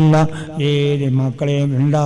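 A man's voice through a microphone in a chant-like, intoned delivery, holding level pitched notes with brief breaks between phrases.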